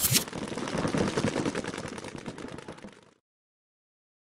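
Logo sting sound effect: a loud impact right at the start, then a rapid rattle of clicks, like fast gunfire, fading out and stopping about three seconds in.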